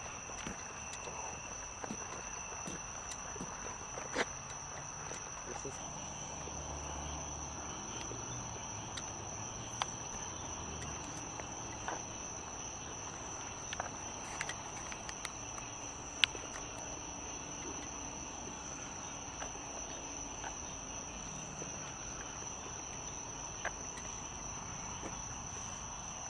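Steady high-pitched trilling of a night-insect chorus, with scattered light footsteps and clicks on pavement.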